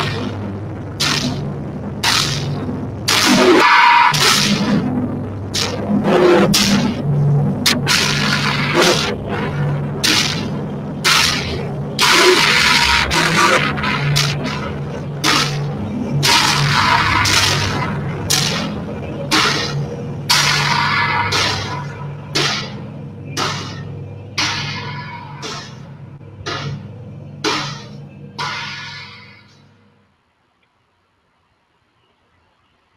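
Live electronic music played on a mixing desk and electronic gear: short bursts of noise, roughly one or two a second, over a low steady drone. It fades out over the last several seconds and cuts off just before the end.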